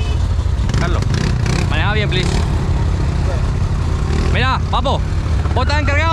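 Can-Am ATV engine running at idle, a steady low rumble, with short bursts of voices about two seconds in and again near five seconds.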